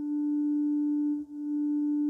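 Organ sounding a single held note with a clear, pure tone. The note breaks off briefly about a second in and is sounded again.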